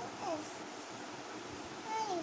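A young child's voice: two brief vocal sounds that fall in pitch, one just after the start and one at the end, over a steady background hiss.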